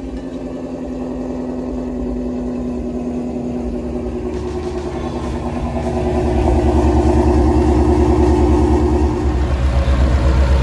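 Supercharged Ford Mustang V8 idling steadily, heard close up. It gets louder about six seconds in.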